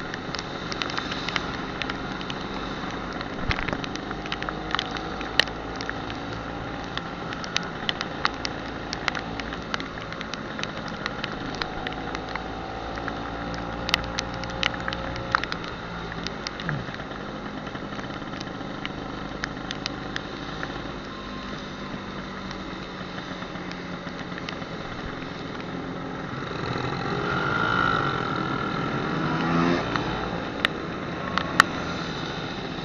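Classic two-stroke Vespa scooter running on the road in the rain, a steady engine note with wind and wet-road noise and its pitch gliding up and down with the throttle, plus scattered sharp clicks. Near the end it grows louder with a rising engine note as other scooters ride close by.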